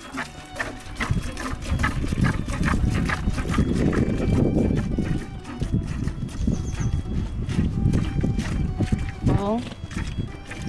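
A mare being hand-milked into a metal pail: repeated short squirts over a steady low rumble, with the horse herd around, and a brief sharply rising call near the end.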